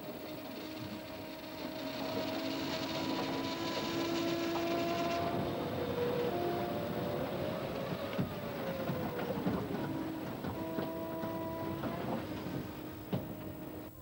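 Machinery noise: a steady rumble and hiss with motor whines that hold and shift in pitch, and occasional knocks.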